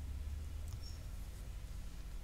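Steady low hum under faint hiss, with one brief, faint high-pitched squeak just under a second in.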